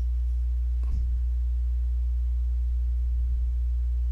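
Steady low electrical hum, a mains-type hum on the recording made of a deep tone and its overtones, with a faint click about a second in.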